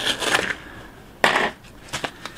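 Scissors snipping through vinyl backing paper and transfer tape for about half a second. A little over a second in there is a single short, loud clatter.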